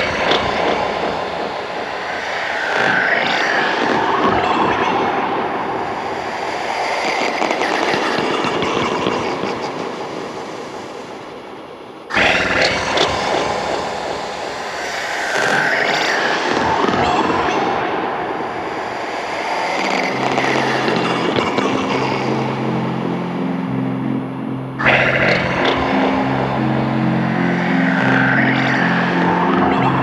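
Experimental electronic music played live on hardware synths and drum machines: dense, noisy washes of sound that swell and then restart abruptly about every twelve seconds. A low synth line of stepped, held notes comes in about two-thirds of the way through.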